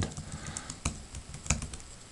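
Typing on a computer keyboard: a handful of short key clicks, the two loudest just under a second in and about one and a half seconds in.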